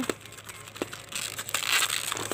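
Plastic packaging wrap crinkling and rustling as it is opened, with a couple of light clicks in the first second.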